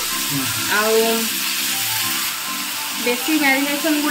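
Marinated chicken pieces sizzling in hot oil in a non-stick frying pan as a second piece is laid in, a steady hiss. Background music with a singing voice plays over it.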